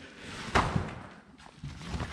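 A fabric car cover being handled and lifted off a tyre, with one brief rustling thump about half a second in, then quieter handling noise.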